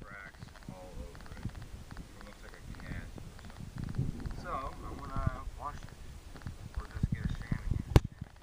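Indistinct, mumbled speech in short snatches, over low rumbles and bumps of a handheld phone microphone being moved about.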